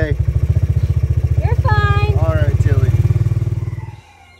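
A small engine running steadily nearby, an even low rapid pulse that stops abruptly near the end. A short voice-like call sounds about halfway through.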